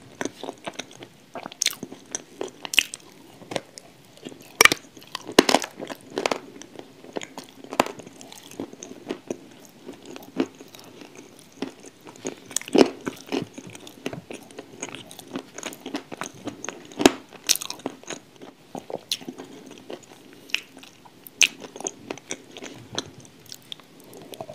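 A person biting and chewing crunchy pieces of chalk coated in wet grey clay: irregular sharp crunches, the loudest about five seconds in and again near 13 and 17 seconds, with softer chewing between.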